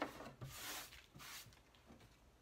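Hands sweeping paper scraps across a wooden tabletop: a few short rustling, brushing strokes, with a light knock at the start.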